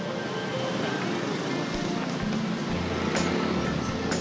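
Background music over steady street traffic noise, with motor scooters riding past.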